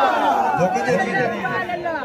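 A man's voice through a handheld microphone and loudspeakers, reciting rather than holding sung notes, with other voices chattering over it.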